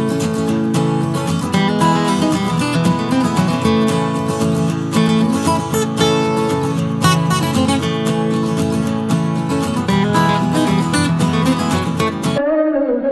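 Background music led by strummed acoustic guitar, with a steady rhythm of strums.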